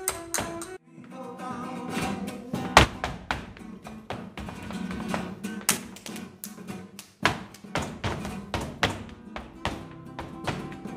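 Flamenco dancer's footwork striking the stage in sharp, uneven strikes, one much louder near three seconds in, over flamenco guitar. A cello holds a note in the first second, then stops.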